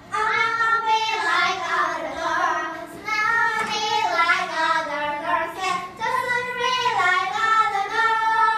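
Young girls singing together in long held phrases, starting abruptly and pausing briefly about three and six seconds in.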